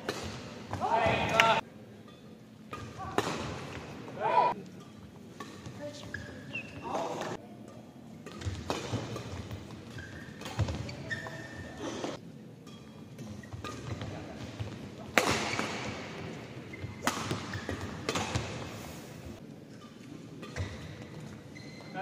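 Badminton rallies: sharp racket strikes on the shuttlecock and thuds of footfalls on the court, echoing in a sports hall. Players' loud shouts come about a second in and again at about four seconds.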